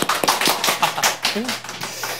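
A man laughing, with a quick run of sharp hand claps, about eight a second, and a short voiced laugh near the end.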